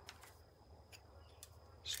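Near silence: faint outdoor background with a thin, steady high tone and a couple of faint ticks.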